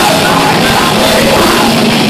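Live punk band playing loud and steady, with distorted electric guitars, bass and drums and a shouted lead vocal, picked up by a phone mic near the stage.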